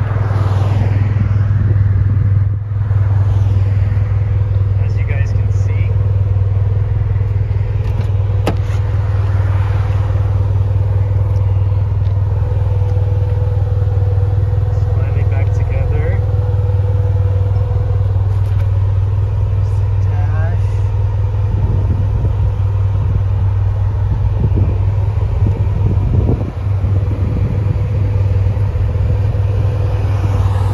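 Toyota MR2 turbo's gen 4 3S-GTE turbocharged four-cylinder idling steadily through an aftermarket cat-back exhaust, a loud, even low hum.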